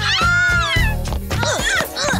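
Two young children wailing, high wavering cries, a long one first and then shorter ones, over background music with a steady low bass line.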